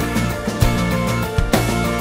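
Progressive rock band playing an instrumental passage with no singing: drums keep a steady beat under sustained guitar and bass parts.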